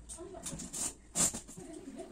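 Quiet handling of bedding while a bed is made: a brief rustle of cloth about a second in, with a faint voice.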